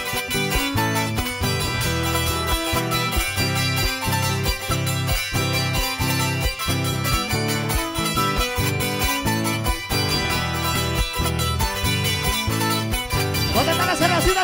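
Live band playing an instrumental passage of dance music: small plucked string instruments over bass and a steady, even beat.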